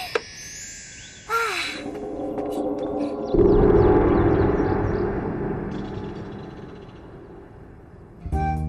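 A deep gong strike about three seconds in, ringing and slowly dying away over the following four seconds, over light background music: a scene-change sound cue.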